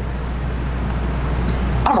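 A steady low rumble with a hiss, slowly swelling louder; a woman starts speaking right at the end.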